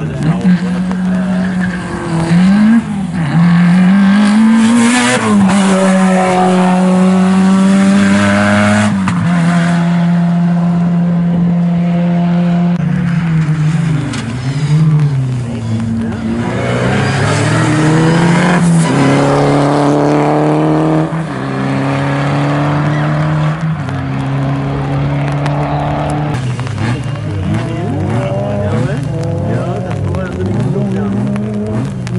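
Rally car engine accelerating hard away from the start. The note climbs through the gears and drops in pitch at each upshift, several times over.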